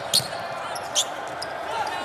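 A basketball dribbled on a hardwood court, with two sharp high-pitched squeaks about a second apart.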